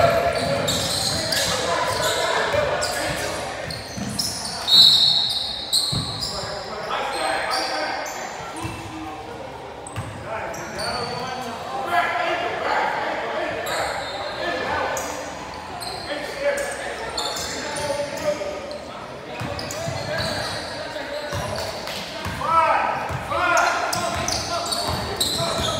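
Basketball game in a large echoing gym: a ball bouncing on the hardwood court amid the scattered calls and chatter of players and spectators, with sharp, brief sounds about five seconds in.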